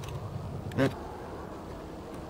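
A man says a single word over a faint, steady outdoor background noise, with a couple of faint clicks near the start. No shot is fired.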